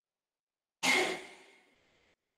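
A person sighing close to the microphone: a breathy exhale that starts suddenly just under a second in and fades away over about a second.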